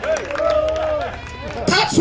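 Speech: a man preaching into a microphone, his words indistinct, his voice rising to a shout near the end.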